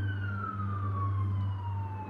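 A siren wailing, its pitch falling slowly through the whole stretch, over a steady low hum.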